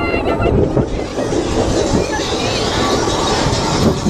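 Onboard a B&M dive coaster in motion: a steady rush of wind over the microphone mixed with the rumble of the train on its steel track, with riders' voices and a high cry about two seconds in.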